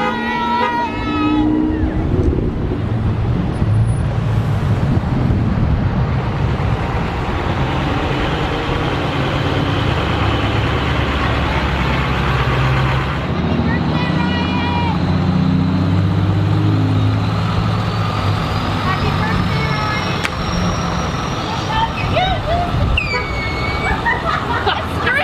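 A slow procession of cars and pickup trucks driving past close by, their engines rumbling steadily, with short horn toots along the way.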